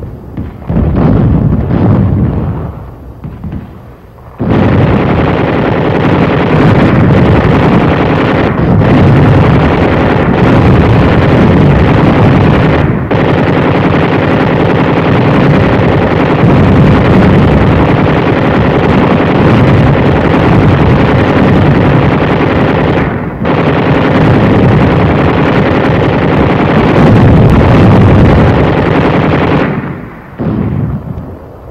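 Heavy gunfire and explosions: a few separate blasts in the first seconds, then from about four seconds in a continuous barrage with only a few brief breaks.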